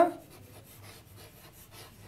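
Faint scratching and rubbing of chalk on a chalkboard as a word is written by hand.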